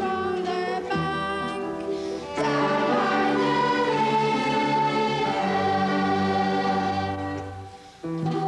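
Children's choir singing with a school orchestra of strings accompanying. The sound grows fuller a couple of seconds in, then a held note dies away just before the end.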